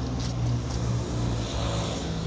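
A steady low engine hum, an engine running without change in pitch.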